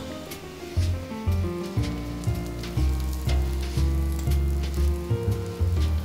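Waffle batter sizzling as it is poured onto the hot nonstick plate of a flip waffle maker, with background music playing held notes.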